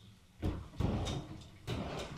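Kitchen cupboard door and drawer being opened and closed: a few short knocks and rattles.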